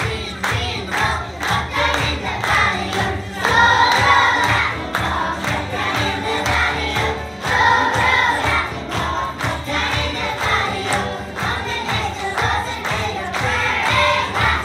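A group of young children singing together to music with a steady beat.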